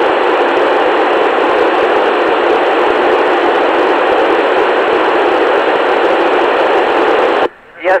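Steady hiss from a Yaesu FT-897D FM radio receiver with no signal coming in, loud and even. It cuts off abruptly about half a second before the end, as the space station's transmitter keys up and quiets the receiver.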